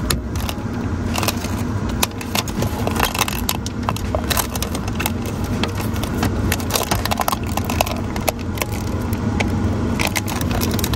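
Old window tint film being peeled slowly off the rear glass, crackling with many irregular small ticks as it comes away from the glass, over a steady low rumble.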